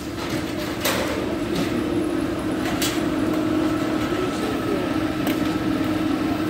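Fire truck's engine running with a steady hum, with a few sharp cracks about one and three seconds in.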